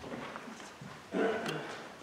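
A congregation settling into its pews: faint shuffling and rustling, with one short pitched sound about a second in.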